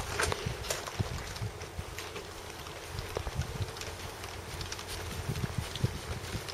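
Footsteps on a grass lawn, soft irregular thumps with a few faint clicks, picked up by a hand-held camera's microphone while walking.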